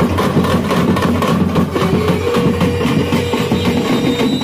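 Festival procession drums beaten in a rapid street rhythm amid a crowd, with a steady held tone joining about two seconds in.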